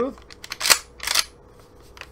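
Pump action of a new Mossberg Maverick 88 12-gauge shotgun being worked: a few light clicks, then two sharp metallic clacks about half a second apart as the fore-end is run back and forward.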